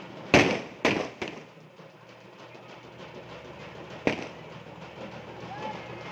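Firecrackers going off: three sharp bangs in quick succession in the first second or so, then one more about four seconds in, over background crowd voices.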